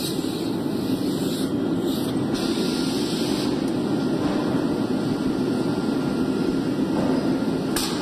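Steady, even roar of glassworks machinery, with no distinct strokes or rhythm.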